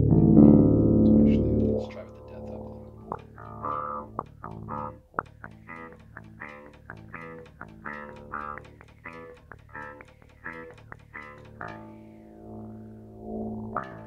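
Gibson Thunderbird bass guitar played through a Seamoon Funk Machine envelope filter: one loud note rings for about two seconds, then a run of short plucked notes follows at about two a second, each with a filter sweep. A held note with a rising-and-falling sweep closes the run.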